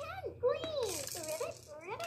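Electronic light-up toy car playing its sound effects after its dome button is pressed: a sing-song voice-like sound with pitch sliding up and down in short swoops, and a light rattle.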